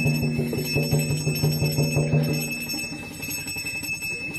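Ritual music with bells ringing steadily over fast regular beats and a low sustained tone. The low tone and beats stop about two and a half seconds in, leaving the bells ringing more faintly.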